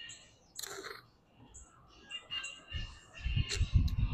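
Small birds chirping in short, scattered calls, with bursts of low rumble near the end.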